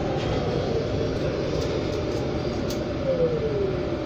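Cabin noise of a Proterra BE40 battery-electric bus under way: a steady low rumble from the road and tyres, with a thin whine from the electric drive that falls in pitch near the end.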